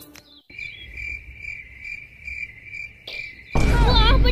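A cricket trilling in one steady, high-pitched note from about half a second in. Near the end a sudden loud burst of noise breaks in, with a voice in it.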